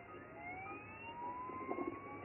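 A faint, siren-like whine that rises slowly in pitch over about a second and a half, heard through a computer speaker and re-recorded on a phone.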